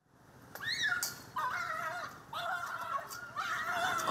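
A dog whining in several drawn-out, high-pitched cries, starting about half a second in: the distress of a dog being caught under a hand-held catch net.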